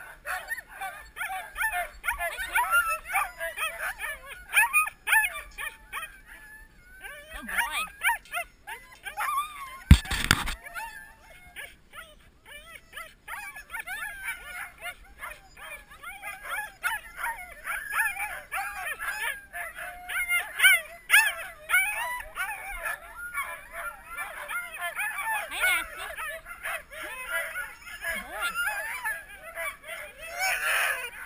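A group of Siberian huskies on a stake-out cable line barking and yipping in a dense, continuous chorus of short high calls: sled dogs worked up while being harnessed for a run. One sharp knock about ten seconds in.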